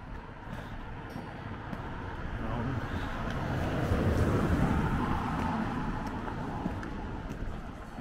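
A road vehicle passing by: its engine and tyre noise swells to its loudest about halfway through, then fades away.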